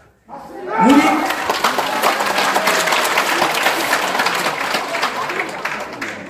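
Audience applauding in a large hall, starting with a shouted cheer about half a second in, then several seconds of dense clapping that thins out near the end.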